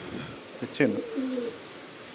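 A domestic pigeon cooing once, about a second in, with a short falling glide into a low held note.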